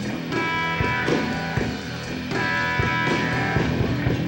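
Rock band playing live, an instrumental passage without vocals: electric bass and a drum kit keeping a steady beat, with sustained higher notes over them.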